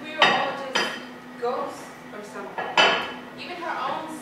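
China plates set down on a wooden dining table: three sharp clinks, each with a short ring, about a quarter second in, just under a second in and near three seconds in.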